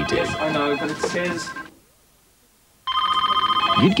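Office telephones ringing over the chatter of people talking on the phone. The sound drops out to near silence for about a second before halfway, then comes back abruptly with a phone ringing and more talk.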